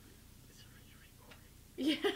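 A quiet room with faint whispering, then a voice says "yeah" near the end.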